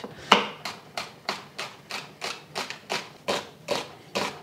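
Knife thinly slicing peeled shallots on a cutting board: a steady rhythm of short crisp cuts, about three a second.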